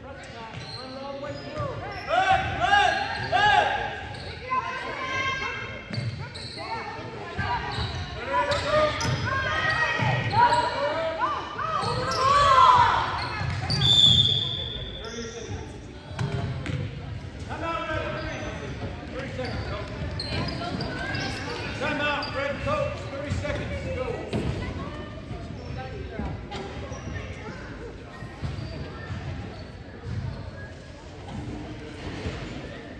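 Basketball bouncing on a hardwood gym floor among echoing players' and spectators' voices, with a short whistle blast about halfway through.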